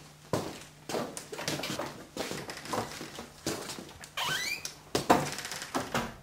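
Irregular knocks, thuds and rustling of someone moving about a small room, with a short squeak about four seconds in, over a faint steady hum.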